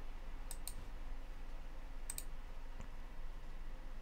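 Computer mouse button clicking: two quick double ticks, each a press and release, about a second and a half apart, with a fainter tick after, over a faint steady hum.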